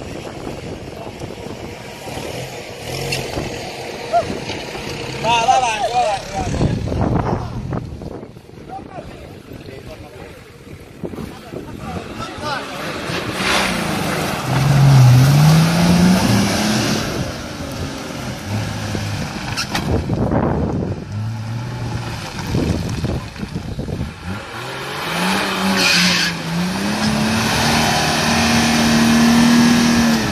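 Off-road 4x4's engine working hard under load in a mud hole, the revs rising in two long pushes, about halfway through and again near the end, with the tyres spinning and throwing mud.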